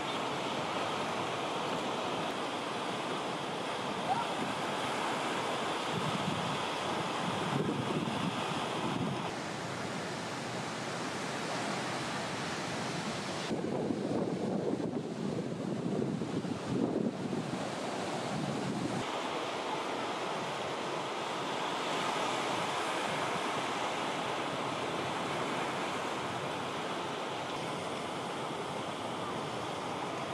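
Ocean surf breaking and washing, with wind rumbling on the microphone. Between about 13 and 19 seconds in, the sound turns rougher and deeper, with less hiss.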